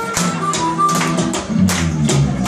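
Live acoustic band music: acoustic guitars and bass guitar over a steady cajón beat, with a harmonica playing short held notes.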